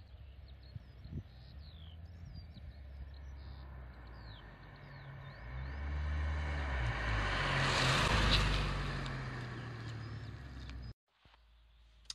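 R8-shape Rover 216 SLi automatic hatchback driving past on a country road. Its engine and tyre noise grow from about five seconds in, are loudest around eight seconds and then fade, with the sound cutting off suddenly just before the end. Birds chirp faintly over the first few seconds.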